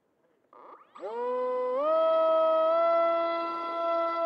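Electric RC plane motor, a 2400 kV brushless outrunner with a 6x4 propeller, spooling up from rest to full throttle for a hand launch. It makes a loud rising whine that steps up in pitch twice, then holds a steady high note.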